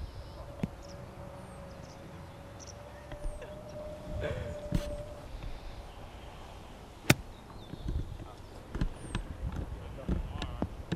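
A golf wedge striking the ball in a short chip shot: one sharp click about seven seconds in, over a steady low rumble of wind on the microphone.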